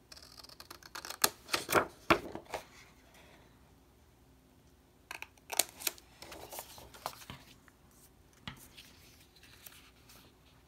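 Small pointed scissors snipping through cardstock, cutting notches at the score lines: a quick run of snips, a pause, then a second run about halfway through, and a couple of single snips near the end.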